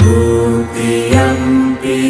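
Music with a chanting voice: held notes that step from one pitch to the next.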